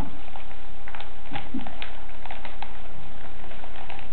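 Thin paper crinkling and rustling in scattered crackles as paper cones are wrapped around one another by hand, over a steady background hiss and hum.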